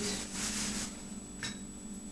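Plastic bag film rustling as a hand rubs a dry salt and spice mix into a mackerel fillet, followed by a single light tap about one and a half seconds in.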